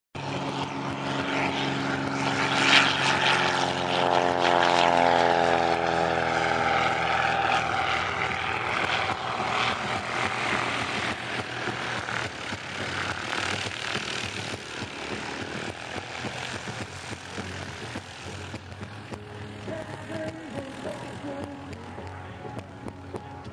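Propeller airplane flying past low overhead: the engine's pitch drops as it goes by a few seconds in, then the sound slowly fades away.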